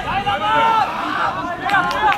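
Several people's voices calling and shouting over one another during football play, with a few short sharp knocks near the end.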